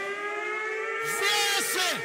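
Sound-system siren effect at a dancehall show: one long held tone that rises slowly, with short zapping sweeps that rise and fall over it.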